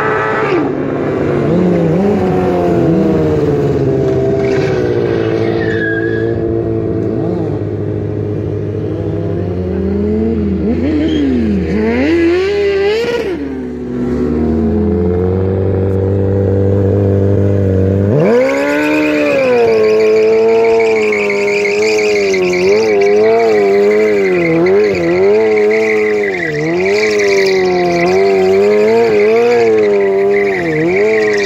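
Sport motorcycle engines revving up and down during stunt riding. About 18 s in, one engine jumps to high revs and is held there, its pitch wavering with the throttle, over a high tyre squeal as the rear tyre spins in a burnout.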